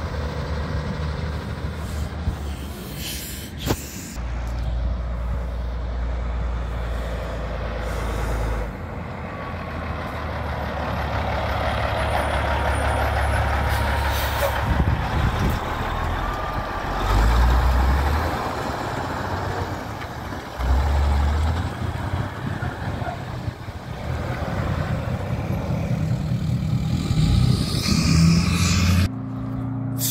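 Heavy diesel dump trucks driving past close by, the engine note swelling as each one nears, with air brakes hissing. The close truck runs a Detroit Diesel 8V92, a two-stroke V8.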